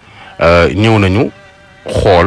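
Speech only: a man's voice talking in two short phrases.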